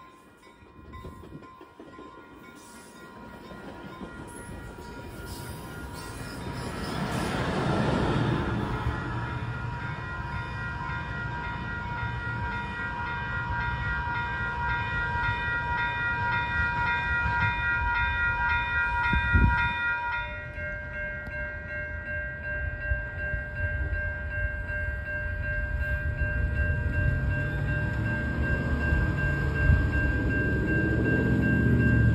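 Coaster commuter train rolling away from the station, its rumble building to a peak about eight seconds in and then carrying on, with steady ringing warning tones over it that change about two-thirds of the way through.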